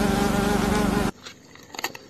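A flying insect buzzing loudly with a steady, slightly wavering pitch, cutting off suddenly about a second in. Faint irregular clicks and crunches follow.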